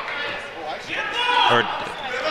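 Basketball bouncing on a hardwood gym floor during play, heard under the commentary.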